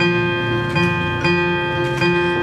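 Steel-string acoustic guitar playing, its notes ringing steadily and changing a few times.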